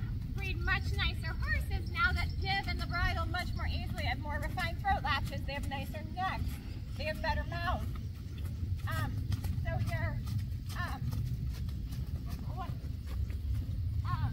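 Indistinct talking over a steady low rumble, with faint hoofbeats of a horse walking on a sand arena.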